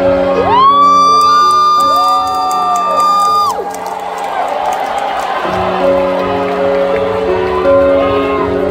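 Live concert: steady held keyboard chords of a song's intro, with a loud audience member's whoop rising and held for about three seconds near the microphone, then a brief wash of crowd cheering before the chords return.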